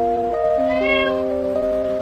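A very young kitten mewing once, a short high call that rises and falls in pitch, heard over background music of steady held notes.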